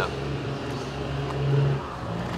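A steady low engine hum that grows louder about a second and a half in, then stops just before the end.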